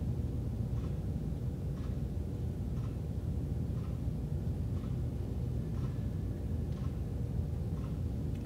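Steady low room rumble, the background hum of a large hall, with faint soft ticks about once a second.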